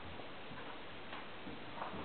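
Great Dane's claws clicking on a tiled floor as it walks, a few faint, irregular ticks over a steady background hiss.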